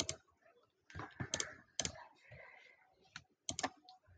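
Sharp, separate clicks at a computer, about seven of them in irregular clusters: one at the start, three in the second second and three near the end.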